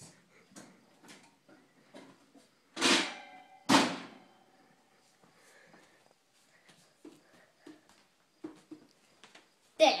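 Metal oven door and rack clanking twice, about a second apart, as a cake pan goes in; the second clank rings briefly. Light clicks and taps follow.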